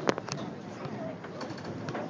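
Murmur of a crowd of voices in a large hall, with a brief sharp high-pitched sound right at the start and a smaller high blip just after.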